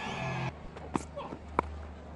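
Cricket-ground ambience from the broadcast's field microphones with a steady low hum, broken by two sharp knocks a little over half a second apart, the second the louder.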